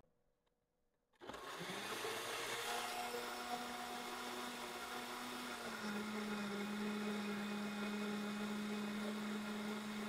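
Countertop blender starting up about a second in and running steadily, pureeing roasted tomatoes and serrano peppers into salsa. Its motor pitch rises as it spins up, then drops a little about halfway through.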